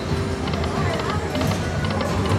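Aristocrat Lightning Link 'Happy Lantern' video slot machine spinning its reels: the game's electronic spin music plays as the reels come to a stop.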